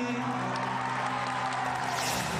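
Live rock music on stage: a held chord with electric guitar, under the cheering and clapping of a crowd.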